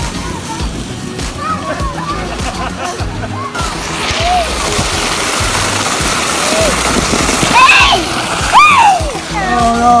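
Water from tipping splash buckets pouring and splashing into a lazy river: a loud rush that starts a few seconds in and lasts about five seconds, over background music.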